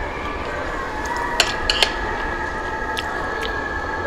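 Metal chopsticks clinking lightly against ceramic plates several times, a quick cluster about a second and a half in and two more near the end, over steady restaurant room noise.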